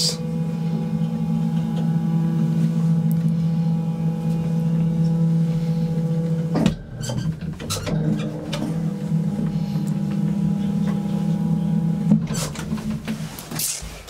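Old Otis traction elevator running: a steady low machine hum as the car travels. About two-thirds in it cuts out with a click and starts again about a second later. It stops with another click shortly before the end, as the car comes to a halt.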